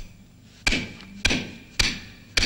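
Hammer striking a brick wall: three sharp blows about half a second apart, each dying away quickly.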